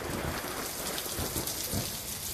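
Recorded rain-and-thunder sound effect: a dense, steady hiss of heavy rain over a low rumble of thunder.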